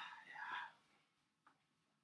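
A man's breathy, whispered vocal sound that trails off within the first second, followed by near silence with one faint click about a second and a half in.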